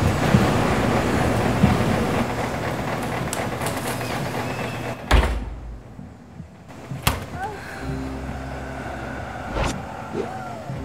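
Washing machine drum tumbling and spinning in a loud, steady rumble that gives way to a heavy thud about five seconds in. Two more sharp knocks follow, about two seconds apart and near the end, over a low droning hum.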